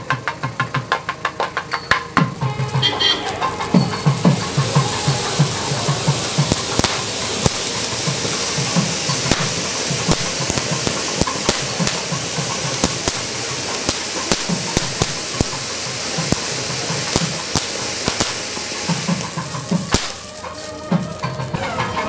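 A ground firework fountain hissing and crackling as it sprays sparks, starting a few seconds in and dying away near the end. Drum beats sound under it and before it starts.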